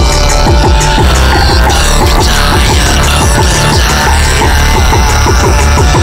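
Dense experimental electronic drone music at a steady loud level: a heavy pulsing bass underneath a fast, continuous flutter of short falling electronic tones.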